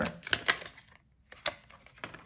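Tarot cards being handled: a handful of sharp, separate clicks and snaps as a card is pulled from the deck. There is a short quiet gap about halfway through.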